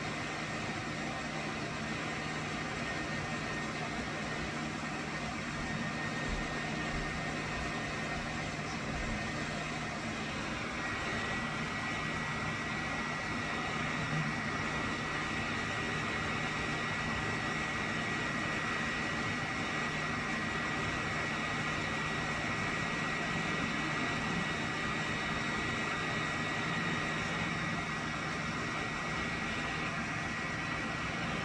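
Handheld hair dryer running steadily: an even rush of air with a low hum and a thin whine, the whine stepping slightly higher and louder about a third of the way through.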